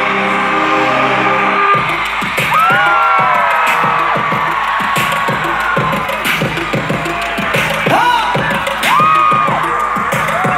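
Live concert sound on a phone microphone. Held synth chords cut off about two seconds in. Then the crowd is screaming and whooping, with many high cries rising and falling over the continuing backing music.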